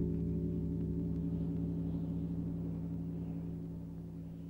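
A low ringing tone made of several steady pitches, held and slowly fading, on an old film's soundtrack.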